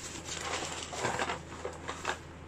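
A shopping bag rustling and crinkling, with cardboard medicine packets scraping as they are pulled out and handled, in a few irregular bursts.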